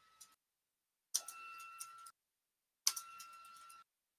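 Stylus tapping and scratching on a tablet screen during handwriting, in three short bursts of clicks about a second each. A faint steady high tone sounds while each burst lasts.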